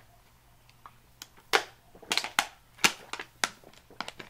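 Thin plastic water bottle crackling in the hand while someone drinks from it: an irregular string of sharp crinkles and clicks.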